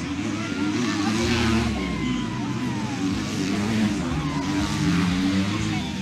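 Dirt bike engines racing on a dirt track, revving and rising and falling in pitch as the riders work the throttle through the corners.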